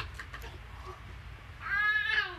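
A cat meows once near the end, a single call that rises and then falls in pitch.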